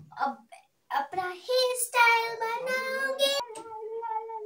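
A young girl singing: a few short sung syllables, then one long held note that breaks off suddenly about three and a half seconds in.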